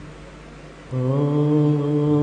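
Background vocal chanting: a low voice holding one long, steady note that comes in about a second in, after a quieter lull.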